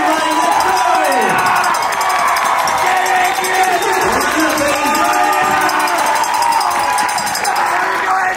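Large crowd cheering and shouting, with clapping, many voices overlapping.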